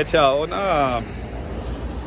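A man's voice saying one drawn-out word, then a steady low outdoor background rumble.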